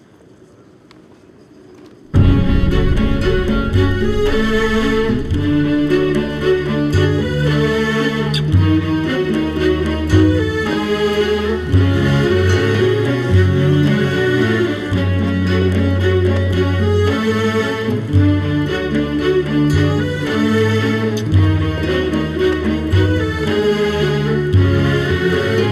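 Background music for the drama: near quiet for the first two seconds, then a string-led piece starts suddenly and plays on, with long held bass notes under a moving melody.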